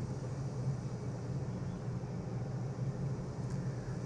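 Steady low hum with a faint even hiss: room background noise, with no distinct handling sounds standing out.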